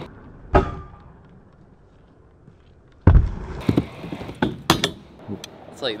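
Stunt scooter on wooden skatepark ramps: a sharp knock about half a second in, then a loud landing thud just after three seconds, followed by the wheels rolling on the wood and several sharp clacks of the deck and wheels striking the ramp.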